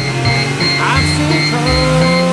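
Country-style background music: long held notes over a plucked bass line that changes note about every half second.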